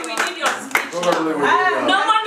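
A small group of people clapping, with voices talking over them. The claps thin out about a second in.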